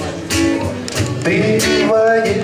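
Live band music: a strummed acoustic guitar over a steady low electric guitar line, in an instrumental gap between sung lines.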